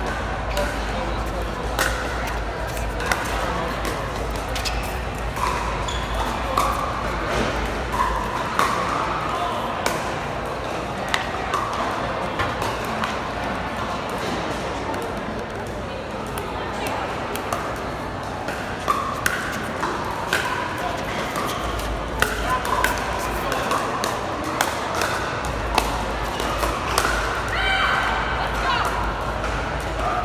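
Pickleball paddles striking a hard plastic ball: a string of sharp pops at irregular intervals, over background chatter.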